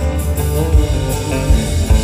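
Live rock band playing an instrumental passage: guitars over a steady low bass, with a few brief low thumps about three-quarters of a second, a second and a half and nearly two seconds in.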